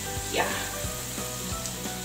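Battered potato slices deep-frying in a pan of hot oil, with a steady sizzle.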